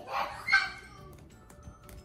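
A short, high-pitched vocal squeal from a young child, loudest about half a second in, over faint background music.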